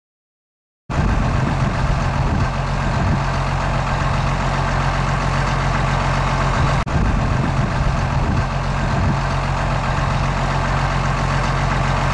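An engine idling steadily, starting about a second in, with a brief dropout midway.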